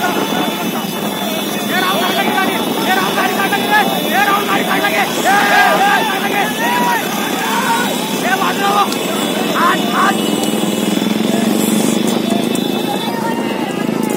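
Several men shouting and calling out over the steady running of motorcycle engines, heard from a moving motorcycle in a pack of riders.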